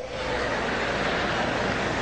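Steady background hiss and room noise with no distinct sound events, the same noise bed that runs under the sermon's speech.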